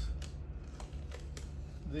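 Fingers picking and peeling vinyl stencil mask off a carved, painted wooden sign: a few light, irregular clicks and scrapes over a steady low hum.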